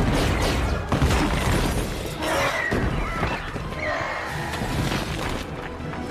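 Action-film battle mix: loud crashing impacts and shattering stone and debris as the Hulk smashes into a building facade, with the first heavy hit right at the start and another about a second in. Orchestral score plays underneath, and several shrill gliding cries come in the middle.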